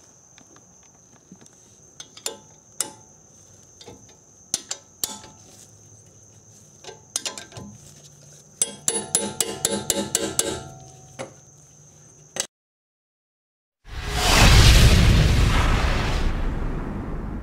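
Ratchet wrench tightening a brake caliper bolt: scattered metal clicks and clinks, then a quick run of ratchet clicks for about two seconds, over a steady high cricket trill. After a brief total silence, a loud rushing boom-like logo sound effect starts suddenly near the end and fades slowly.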